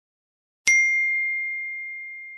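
A single bright, bell-like ding sound effect about two-thirds of a second in, ringing on and fading slowly.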